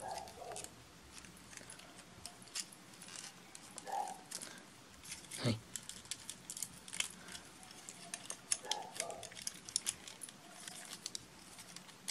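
Hard plastic parts of a Transformers Bumblebee action figure clicking and ticking faintly as its arms and car panels are moved by hand during transformation, with one firmer knock about five seconds in.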